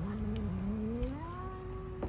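A black cat's long, low threatening yowl, directed at another cat in a standoff. It starts low, rises in pitch about halfway through and is then held.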